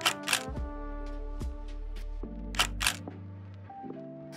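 Background music with held notes over a low bass. A camera shutter sound effect fires twice over it, each time a quick double click: once at the start and once a little past halfway.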